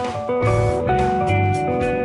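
Instrumental background music led by guitar, with low bass notes underneath.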